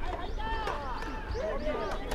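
Several voices shouting and calling at once on an American football field while a play is run, over steady outdoor background rumble, with a couple of faint knocks.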